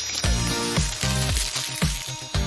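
Background music with a steady, rhythmic beat and repeating bass notes.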